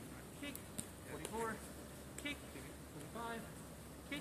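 Indistinct voices calling out at a distance, three short calls about a second apart, children's voices.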